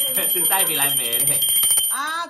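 Small brass hand bell shaken continuously, giving a fast, steady ringing that stops near the end.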